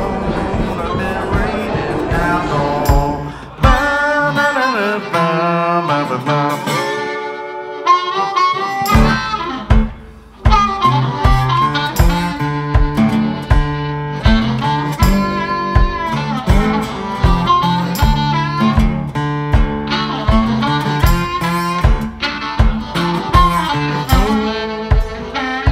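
Live blues instrumental break: harmonica playing bent notes over guitar, with a steady kick-drum beat. The beat drops out about four seconds in and comes back about nine seconds in.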